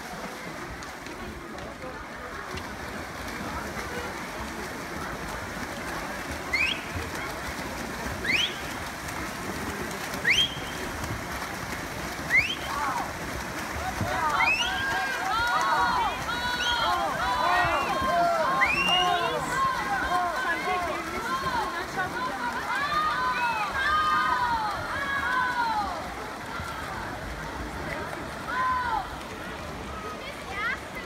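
Spectators shouting encouragement at a freestyle swim race over a steady wash of splashing water. A few short rising shouts come about two seconds apart, then from about halfway many voices shout and cheer together, loudest in the second half and easing off near the end.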